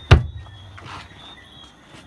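A fist banging down on a plywood board: one heavy thump just after the start that dies away quickly.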